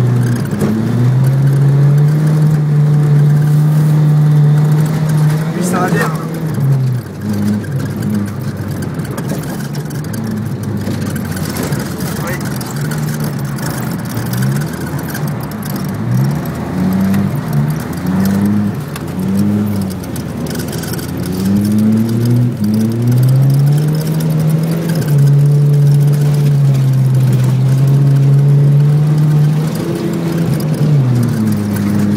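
Car engine heard from inside the cabin, revving hard on an ice track. It holds high revs for a few seconds at a time near the start and again near the end, with a run of quick rev rises and drops in between and a brief sharp rising whine about six seconds in.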